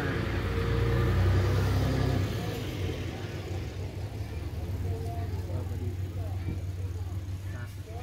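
A pickup truck driving past, its low engine rumble loudest in the first two seconds and then fading away.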